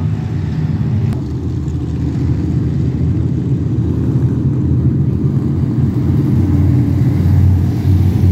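Engines of several dirt-track stock cars running as the field circles the track, a steady low rumble that grows louder near the end as cars come past.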